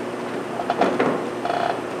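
Papers handled near a desk microphone: a few light clicks and rustles around the middle, then a brief pitched sound.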